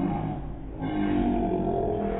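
Voices singing in long held notes, with a dip in loudness about half a second in before they carry on: a birthday song sung over a candle-lit dessert.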